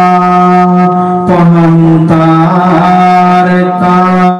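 A Buddhist monk chanting Sinhala verses (kavi bana) into a microphone in a single melodic voice: three or four long held notes, each lasting about a second, gliding from one pitch to the next.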